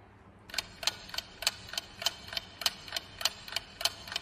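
Clock-ticking countdown sound effect: sharp, even ticks about three a second, starting about half a second in. It times the pause for answering a quiz question.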